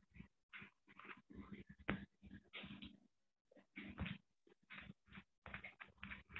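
Faint animal sounds, most likely a dog, in many short choppy bursts that cut off abruptly, heard through video-call audio.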